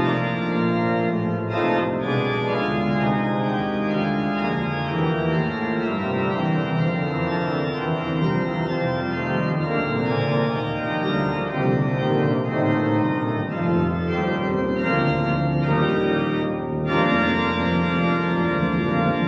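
Organ playing continuous full chords, many sustained notes moving together in a classical recital piece, with a short break in the upper notes just before the end.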